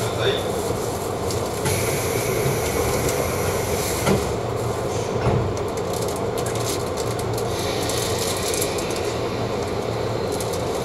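Steady hum and hiss inside the cabin of a JR East 185-series train standing at a platform, with a short knock about four seconds in.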